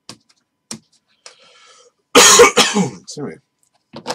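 A man coughs and clears his throat about two seconds in, the loudest sound here. Before it come two short sharp clicks of hard plastic card holders knocking together as they are handled.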